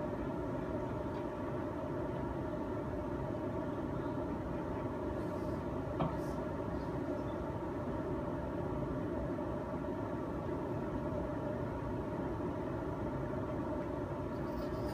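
Steady machine-like rumble and hum that holds level throughout, with a single sharp click about six seconds in.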